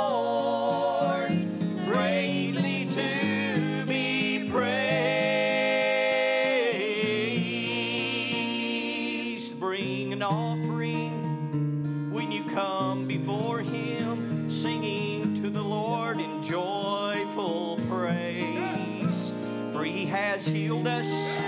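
Live gospel song with sung vocals over an acoustic guitar.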